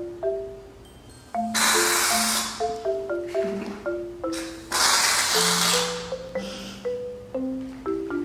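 Aerosol can of shaving foam hissing as foam is sprayed out, in two bursts: one about a second and a half in and one about five seconds in, each lasting around a second. Light marimba background music plays underneath.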